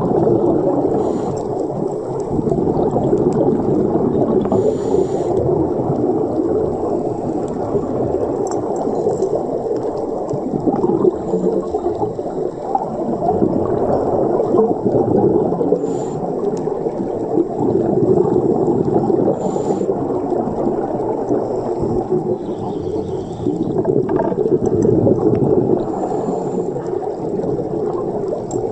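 Scuba diver's regulator breathing heard through an underwater camera housing: a steady, muffled bubbling rumble of exhaled air, with a brief higher hiss every few seconds.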